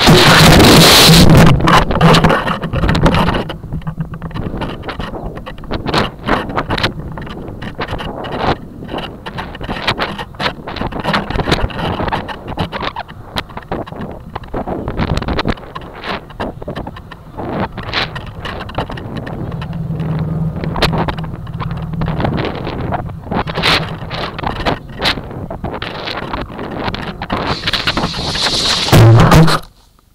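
Wind rushing and buffeting over a model rocket's onboard camera as it falls back after the ejection charge, loudest for the first three seconds or so, with many sharp clicks and knocks throughout. The noise swells again near the end, then cuts off suddenly as the rocket comes to rest in the grass.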